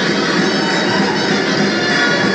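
Traditional folk dance music with a loud reed wind instrument playing steady, sustained notes.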